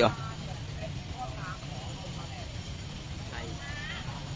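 A pause in a man's talk: a steady low background hum, with faint distant voices about a second in and again near the end.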